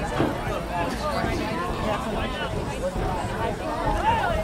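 Chatter and calls from a group of youth football players and onlookers, many voices talking over one another with no one voice standing out.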